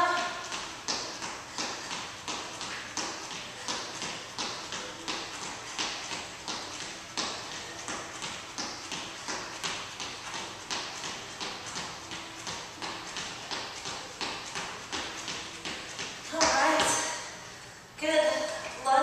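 Footfalls of sneakers on an exercise mat as a person jogs in place, an even beat of about three steps a second that stops near the end. Just before it stops, a short loud burst of voice.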